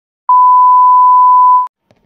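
A steady 1 kHz test-tone beep, the tone that goes with television colour bars. It starts a moment in, holds for about a second and a half, and cuts off sharply.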